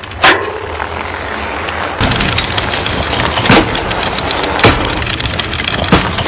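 Sound effects for the animation: a sharp knock just after the start, then a few more sharp knocks about a second apart, over a steady noisy background.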